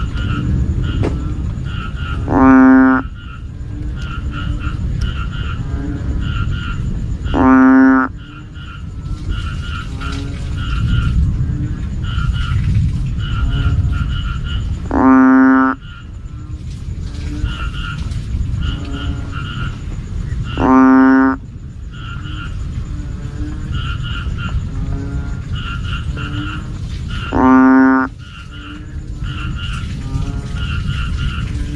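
Banded bullfrog (Asian painted frog) calling: five deep, droning calls, each about half a second long and several seconds apart. A background chorus of faint, quicker calls runs between them.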